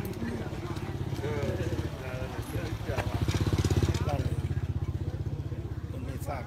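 A vehicle engine running with a fast, even throb, louder for about a second around the middle, while people talk nearby.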